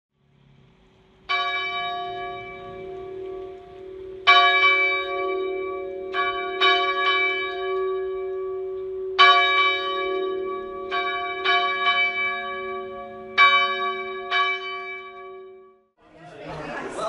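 Church bell struck about a dozen times at uneven intervals, some strikes coming in quick pairs and threes. Each strike rings on long and overlaps the next, and the ringing fades away near the end.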